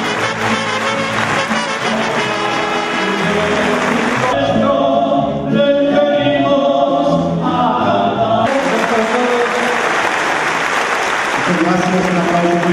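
An audience applauding over band music with brass. The clapping eases off about four seconds in, leaving the brass melody clearer, and swells again about eight seconds in.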